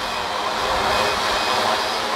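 Multirotor drone's propellers running with a steady buzz that holds its pitch, with several faint held tones in it.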